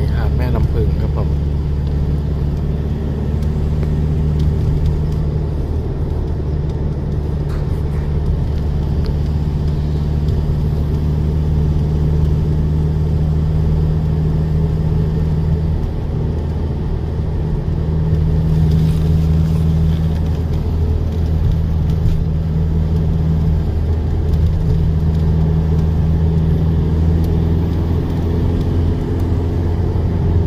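Steady low drone of a car's engine and tyres heard from inside the cabin while driving at a constant cruising speed.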